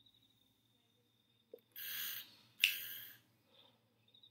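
Quiet room tone broken around the middle by a faint click and then two short breaths into a close microphone, each about half a second long and less than a second apart.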